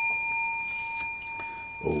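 A large silver coin ringing, a clear metallic ring of several high tones that slowly fades away.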